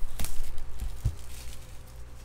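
Cardboard trading-card box being handled, with a few light knocks and rustles as it is moved and set in place. The sounds fade away near the end.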